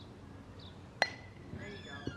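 A metal softball bat hits a pitched softball about a second in: one sharp ping with a brief ring.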